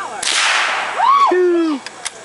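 A single sharp .22 rifle shot about a quarter-second in, its crack trailing off over most of a second. A person's voice then calls out once, its pitch rising and falling.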